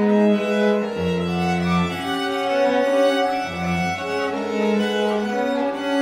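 String quartet playing a slow contemporary piece: held, overlapping bowed chords on violins, viola and cello, the pitches shifting every second or so. Low cello notes come in about a second in and again about halfway through.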